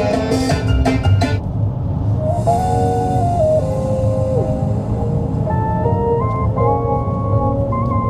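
Music played through the KGM Musso EV's factory sound system, heard in the cabin while driving. A busy, bright passage in the first second and a half gives way to sustained melody notes stepping up and down, over steady low road noise. The system sounds acceptable but lacks deep bass.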